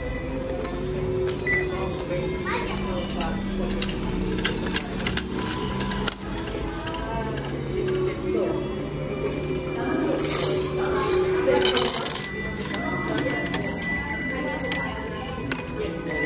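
A station ticket vending machine taking a 1,000-yen banknote and dispensing a pass and change, heard as scattered clicks with a louder mechanical stretch about ten to twelve seconds in. Background music with sustained notes plays underneath, along with voices.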